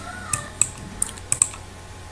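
About five sharp, irregular clicks from a computer keyboard or mouse being worked at a desk, over a low steady hum.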